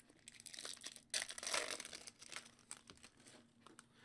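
Foil wrapper of a Topps Chrome football card pack crinkling and tearing as it is pulled open by hand, loudest for about a second starting a second in, with small crackles around it.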